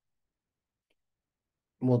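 Near silence, broken by a single very faint click about a second in; a man's voice starts speaking near the end.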